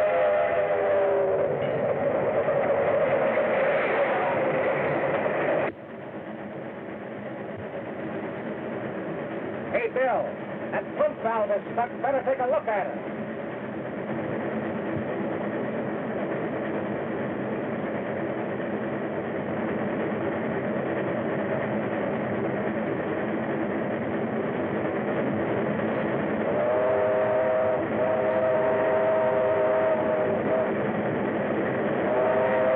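Steam locomotive running at speed, its whistle sounding a held chord of several tones at the start, fading about a second in, and again near the end. The running noise drops suddenly about six seconds in, and a brief wavering sound rises above it around ten to thirteen seconds in.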